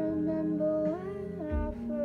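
A woman singing softly, close to humming, holding long notes with a rise in pitch about a second in, over a quiet guitar accompaniment.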